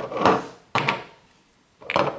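Small glass spice jars with plastic lids set down and handled on a tabletop: a dull knock at the start, a sharper one under a second in, and another near the end.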